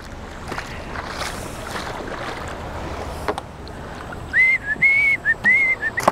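Wading steps and water washing around the legs as a plastic sit-on-top kayak is slid off the sand into shallow river water, with one sharp knock a little past three seconds in. From about four seconds in, someone whistles a run of four or five short, clear notes at one pitch.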